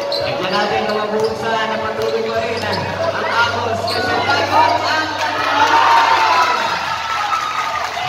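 Basketball bouncing on the court as it is dribbled, with the surrounding crowd of spectators talking and shouting throughout, the voices loudest about halfway through.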